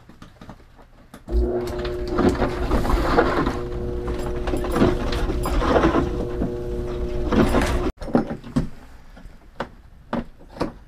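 Wooden fur drum turning on its motor, tumbling pine marten pelts in sawdust: a steady motor hum with a low rumble and irregular rustling clatter. It starts about a second in and stops abruptly near eight seconds, followed by light scattered clicks.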